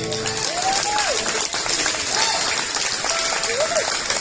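Audience applauding at the end of a bluegrass song, with a few voices calling out over the clapping.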